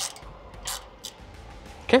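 A wrench working the mounting bolt of the N1 speed sensor on a CFM56-5B engine's fan frame, with one short, scrape-like metal sound less than a second in.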